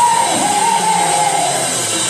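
Live gospel music with band accompaniment: one long held melodic note that wavers slightly, starting about half a second in and fading near the end.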